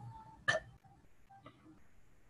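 A single brief, sharp throat sound about half a second in, in a pause in the reading; the rest is faint room tone over the call.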